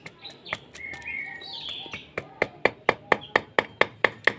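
Quick, light metal taps, about four a second from about halfway in, as a new rear-axle oil seal is driven into the aluminium final-drive case of a Honda Beat with a steel drift. A few bird chirps come earlier.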